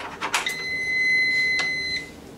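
Treadmill control panel giving one long, steady high-pitched beep of about a second and a half as the machine is started up. A few short clicks come just before it.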